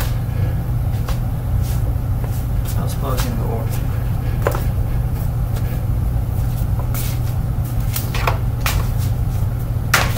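Oreck XL upright vacuum running with a steady low drone. A few sharp clicks and knocks come through, about halfway and again near the end.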